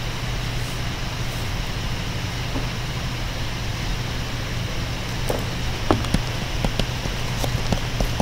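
Stylus tapping and clicking on a tablet screen while handwriting, a series of light, irregular clicks starting about five seconds in, over a steady electrical hum and hiss.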